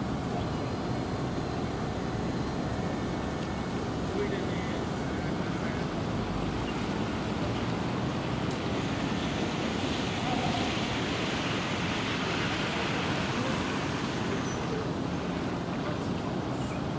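Steady outdoor traffic noise with tyres hissing on wet pavement, a brighter hiss swelling about ten seconds in and fading before the end.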